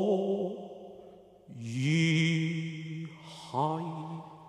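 A Cantonese opera singer's voice drawing out a slow sung phrase: a held note fades away, then after a short dip two long notes follow, each starting with an upward slide.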